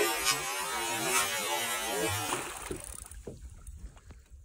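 A pike thrashing and leaping at the water surface, splashing heavily; the splashing dies away after about two and a half seconds.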